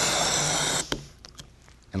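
A person blowing hard through a sports-drink bottle's pull-top spout to inflate a rubber balloon: a steady rush of breath lasting about a second. It is followed by a sharp click and a few faint ticks.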